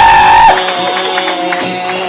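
A singer through a bar's PA over a recorded backing track, holding a loud note that breaks off about half a second in, while a lower steady note carries on under the music.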